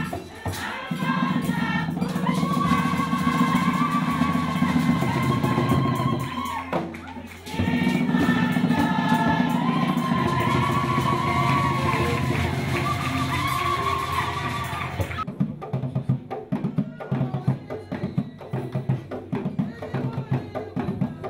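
A women's choir singing together over percussion, with a short break in the singing about seven seconds in. About fifteen seconds in the singing stops suddenly and gives way to choppy hand drumming and clapping.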